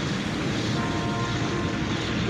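Fire burning steadily, a dense, even noise with no breaks.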